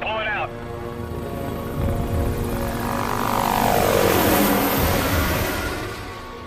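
Helicopter flying past overhead, its rotor and engine noise growing to a peak a few seconds in, with a whine that falls in pitch as it goes by.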